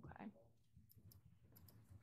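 Near silence: room tone with a few faint, sharp clicks after the end of a spoken word.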